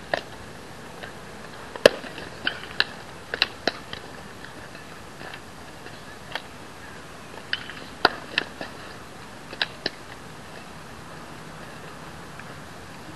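A scatter of short, sharp clicks and taps over a steady hiss, the loudest two about two seconds in and about eight seconds in.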